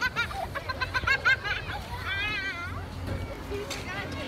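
Children calling and squealing at play, with high quick calls in the first second and a half and a longer wavering squeal about two seconds in, over a background hubbub of voices.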